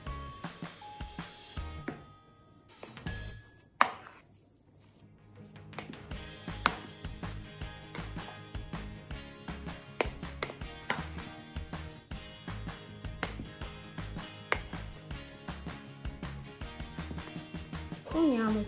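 A metal spoon knocking and scraping against the side of a bowl while mashed potatoes are stirred, with a few louder knocks scattered through. Background music plays underneath.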